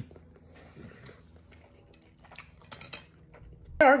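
A few sharp clicks and clinks in quick succession about three seconds in, from a bottle of sweet chili sauce being picked up and its cap opened.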